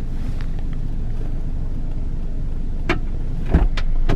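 Car engine idling, heard from inside the cabin as a steady low rumble. A click and then a sharp thump near the end as a car door is opened.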